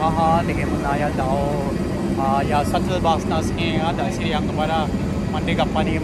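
A man talking over the steady low rumble of aircraft on an airport apron.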